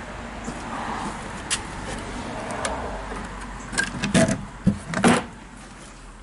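Wooden boards of a homemade plywood chip box knocking and bumping as its door is swung shut, with rustling handling noise first and then a quick run of sharp wooden knocks in the second half, the loudest near the end.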